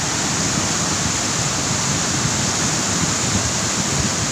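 The Ciliwung River in flood, its water rushing steadily past; the river is swollen and still rising.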